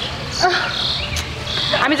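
Insects chirping in short, high-pitched bursts repeated a few times, cricket-like.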